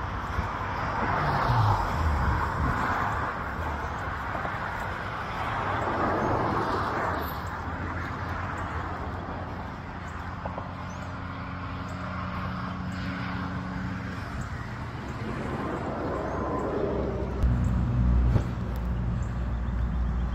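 Road traffic passing: a vehicle's engine note falls as it goes by about a second in. Steady engine hum comes from more passing traffic later, with a louder pass near the end.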